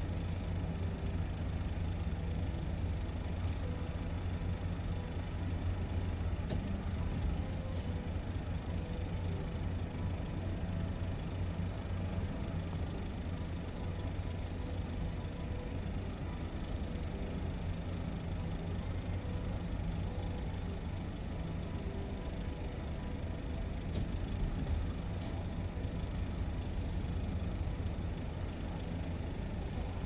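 Steady low engine rumble with no rise or fall, and a few faint clicks.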